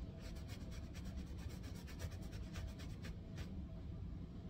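Faint, quick, irregular scratchy strokes of a thin paintbrush working paint onto a stretched canvas, thinning out near the end, over a low room rumble.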